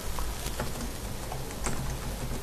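Computer keyboard being typed on, a run of quick, irregular key clicks over a low steady hum.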